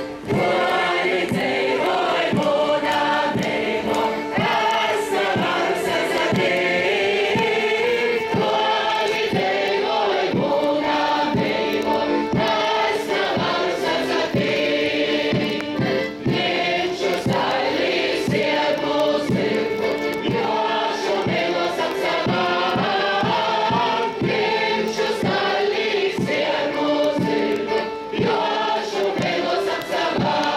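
Large group of voices singing a Latgalian folk song together, the audience singing along with the performers, over instrumental accompaniment with a steady held note underneath.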